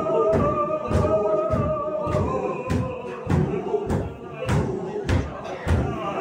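Sufi zikr: a group of men chanting together in unison while stamping barefoot on a wooden floor, the stamps falling evenly about one and a half times a second. A held chant note fades out about two seconds in, and the chanting goes on lower under the stamping.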